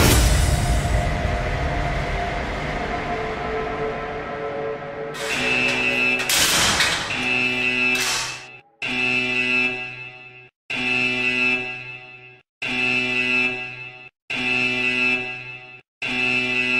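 The song's last chord dies away over several seconds. Then a harsh buzzing alarm starts, with a burst of noise as it begins, and repeats in long pulses about every two seconds.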